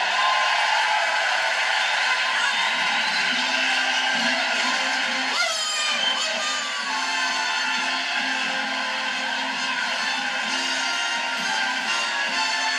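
A band playing entrance music under steady audience applause, heard through a television's speaker.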